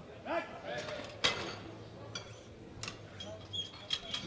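A short shout, then a single sharp metal clank about a second in as the loaded barbell is set back into the bench-press rack, followed by a few lighter clicks and knocks.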